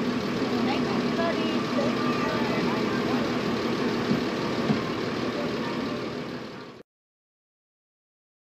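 A bus engine idling steadily under faint voices, fading and then cutting to silence near the end.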